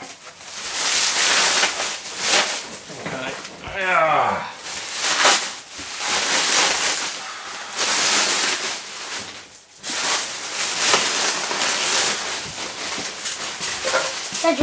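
Clear plastic stretch wrap and bubble wrap crinkling and rustling as it is pulled and bunched off a box, in several long stretches with short pauses between.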